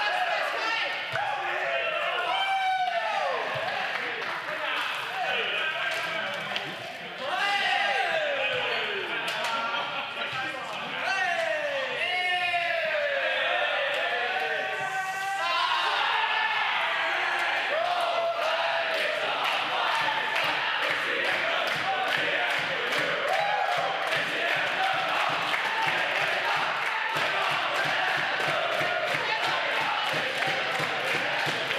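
A group of footballers celebrating in a changing room: excited shouts and whoops with swooping pitch, and a ball slapping into hands. About halfway through it thickens into steady clapping and many voices at once.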